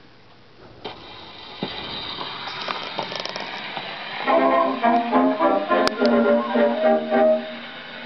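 Edwardian music hall 78 rpm record playing on a gramophone: a few seconds of surface hiss and crackle from the lead-in groove, then a brass-led orchestral introduction starts about four seconds in, with a sharp click near six seconds.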